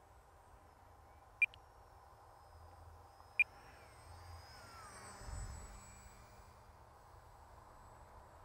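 Faint whine of a small RC plane's electric motor and propeller passing overhead. It grows a little louder near the middle, and its pitch falls as it goes by. Two short, high chirps come earlier.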